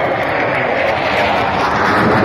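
Military jet flying overhead, its engine noise a dense, steady rush that grows louder as it approaches.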